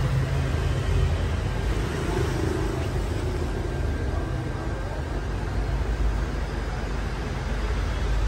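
Steady low rumble of road traffic in the background, with a slight swell about two to three seconds in.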